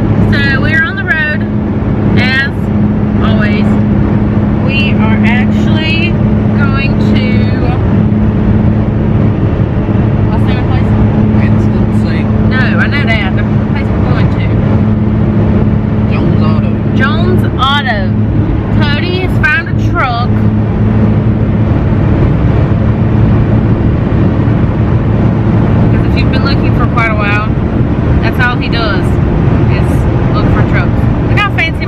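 Talking inside a moving pickup truck's cab over the vehicle's steady low engine and road drone.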